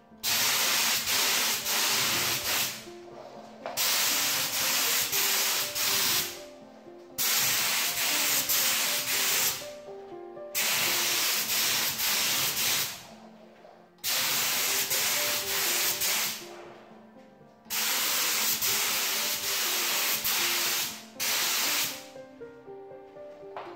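Compressed-air spray gun spraying PVA release agent over the part and board. It hisses in six bursts of about two to three seconds each, starting and stopping sharply with short pauses between.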